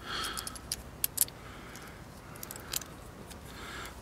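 Small metal parts clicking and clinking in the fingers as a screw and washer are fitted through a strap-lock button by hand. There are several light, sharp clicks, most of them in the first second and a few more near three seconds in.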